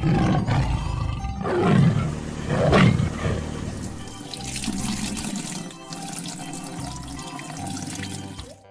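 Two tiger roars, about two and three seconds in, then water gushing and pouring, over light background music.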